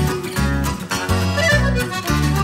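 Live band playing the instrumental introduction to a Russian chanson song: bass notes on a steady beat, about two a second, under a melody line.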